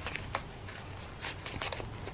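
Faint rustling of paper and card, with a few light ticks, as a paper tag is handled and slid into a handmade journal's pocket.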